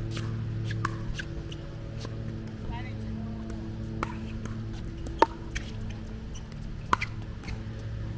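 Pickleball paddles hitting a hard plastic ball: sharp pops, the loudest about five seconds in and another about seven seconds in, among fainter clicks. A steady low hum runs underneath.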